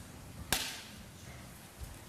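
A single sharp knock about half a second in, with a short ring in the room after it, and a soft low thump near the end, over quiet room sound.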